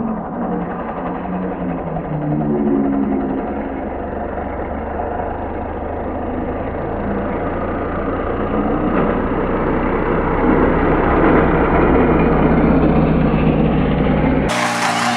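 Steady low motor drone of the lure drive on a dog-racing track, with a rush of noise that grows louder in the second half.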